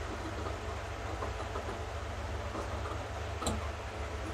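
Large tailor's shears cutting through cloth in a series of snips, with one sharper blade click about three and a half seconds in, over a steady low hum.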